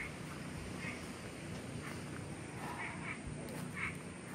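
A few short animal calls, about one a second, over a steady low rumble.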